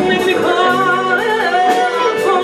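A woman singing a blues song with a live band of electric guitar, bass guitar, keyboard and drums, her sung line bending up and down in pitch over the band.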